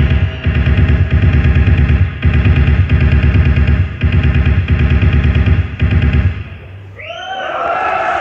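Live industrial electronic music with a dense, fast-pulsing bass rhythm, cutting off about six seconds in as the song ends. A rising cheer from the audience follows near the end.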